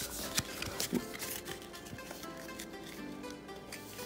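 Faint background music with steady held notes, with a few light clicks and rustles from a pack of trading cards being shuffled by hand in the first second.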